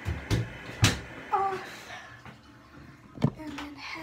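A few sharp knocks and thumps of a phone being handled and picked up, over a steady hiss of running water that fades out about two seconds in.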